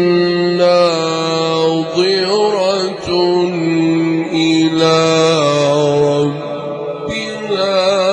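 Male Qur'an reciter chanting in the melodic tajweed style into a microphone, holding long drawn-out notes with wavering ornaments and pausing briefly a few times.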